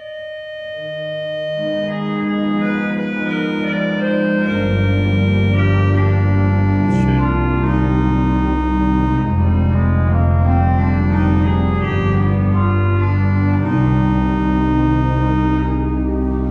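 Large German-Romantic pipe organ built by Seifert in 1907 playing a slow passage of held chords. It opens on a single high sustained note, and lower voices join within the first two seconds. Deep pedal bass comes in about four and a half seconds in, and the sound swells to a full, loud organ sound.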